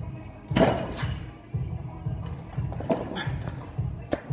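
Background music with a steady bass beat. About half a second in, a man gives a loud strained yell as he pulls a heavy barbell off the floor, with a shorter grunt near three seconds.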